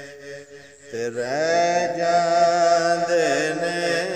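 A man singing a Punjabi Sufi kalam in a long, drawn-out melismatic style. After a brief break, a long held note begins about a second in, sliding up at its start and wavering near the end.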